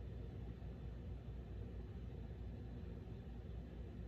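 Steady low background hum and faint hiss of room tone, with no distinct sound events.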